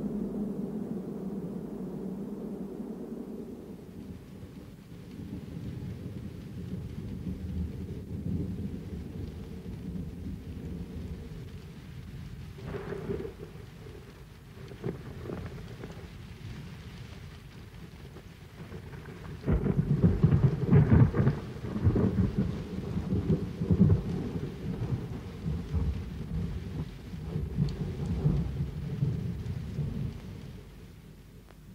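Thunder: low rumbling that swells and eases, then a sudden loud peal about twenty seconds in that rumbles on and slowly dies away.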